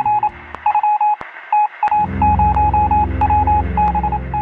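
Electronic beeping sound effect: short beeps at one pitch in uneven, Morse-code-like clusters, with a few sharp clicks. A low steady drone joins the beeps about two seconds in.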